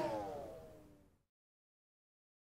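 Tail of a falling swoosh sound effect: several tones gliding downward together, fading out about a second in.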